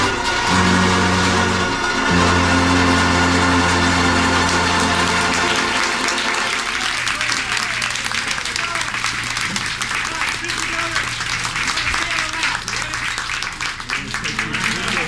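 A banjo band finishes a tune on held low notes, which stop about six seconds in. Then the audience claps and applauds.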